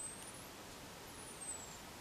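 Faint high-pitched whine from the small ferrite transformer of a transistor blocking oscillator. It glides up in pitch, breaks off, and then glides back down as the oscillation frequency shifts with the potentiometer setting. This is the oscillator running in its audible range, with low hiss underneath.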